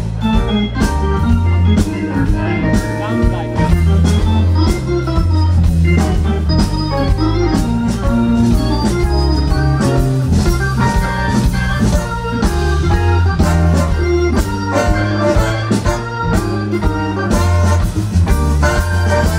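Hammond organ playing a solo of quick, shifting note runs, backed by electric bass and drums keeping a steady beat.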